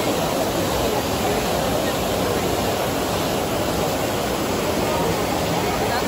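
Trevi Fountain's water cascading over the rock basin: a steady rush of falling and splashing water, with the chatter of a crowd of voices mixed in.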